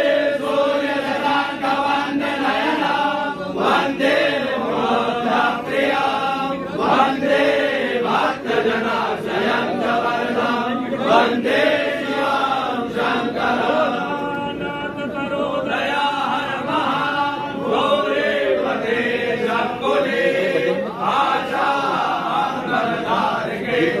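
A group of male priests chanting Sanskrit mantras in unison, a continuous rising and falling recitation in worship of Shiva.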